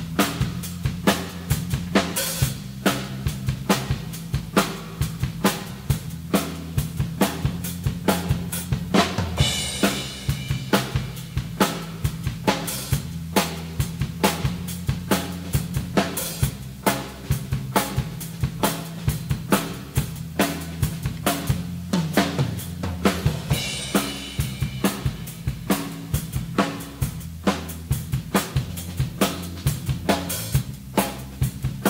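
Live rock band playing an instrumental intro: a drum kit keeps a steady beat of about two hits a second, with an electric bass line underneath. Brief bright accents come about ten seconds in and again near twenty-four seconds.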